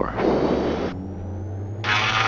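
Twin engines of a Diamond DA42-VI being brought up to takeoff power: a steady drone under a faint, slowly rising high whine, heard in the cockpit. Two short bursts of hiss come in, one just after the start and one near the end.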